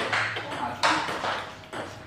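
Celluloid-type table tennis ball bouncing: two light, hollow knocks a little under a second apart.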